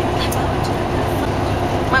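Steady low rumble of a moving coach bus heard from inside the passenger cabin: engine and road noise.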